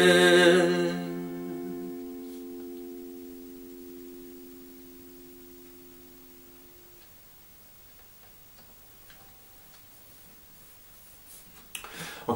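A held final sung note over a strummed steel-string acoustic guitar chord. The voice stops about a second in, and the guitar chord rings on and fades away over several seconds, leaving quiet room tone with a few faint ticks.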